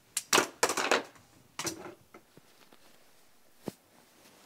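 Rustling of long hair and a satin robe as hands sweep and pull sections of hair apart: a few loud brushing sweeps in the first two seconds, then a single sharp click near the end.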